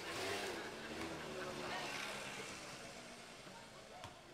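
Street ambience with people talking indistinctly and a motor scooter going past near the start.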